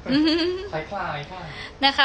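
A woman's drawn-out, quavering laugh, loudest in the first second and trailing off softer.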